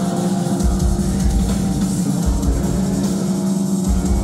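Metalcore band playing live at full volume: distorted electric guitars, bass and a pounding drum kit in a continuous heavy passage, heard from among the audience.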